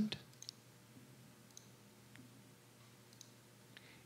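Quiet room tone with a few faint, scattered small clicks, irregularly spaced.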